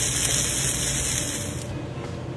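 Garlic bread sizzling in hot fat on a cast-iron griddle, a steady hiss that cuts off suddenly about one and a half seconds in.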